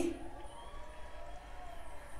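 A pause in a woman's speech: quiet room tone with a faint hum, her last word trailing off at the very start.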